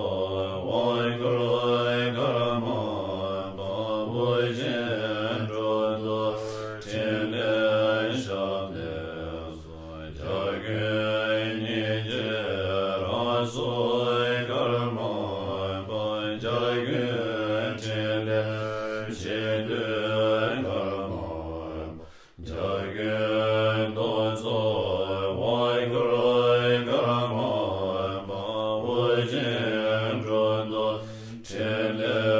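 Tibetan Buddhist chanting of a long-life prayer for the Karmapa, many voices reciting low and steady in unison, with one brief pause for breath about two-thirds of the way through.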